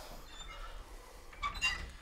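A wooden bedroom door being pushed shut, with a brief faint squeak and click about one and a half seconds in.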